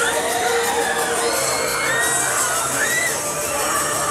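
Riders screaming and shouting on a swinging-arm fairground thrill ride, over loud fairground music.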